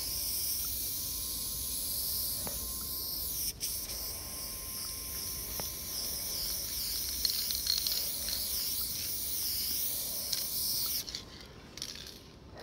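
Aerosol spray paint can spraying in long steady hissing passes, broken briefly about three and a half seconds in and cutting off about a second before the end.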